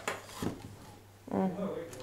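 Handling noise from a plastic mailer bag and a small tripod on a counter: a short rustle at the start and a light knock about half a second in, then a brief spoken 'o'.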